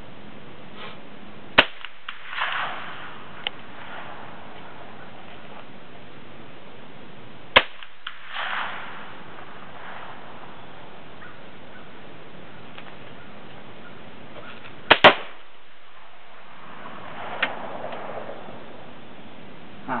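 Sharp cracks of a scoped .22 rifle fired from a bench: three shots about six seconds apart, the third followed right away by a second report.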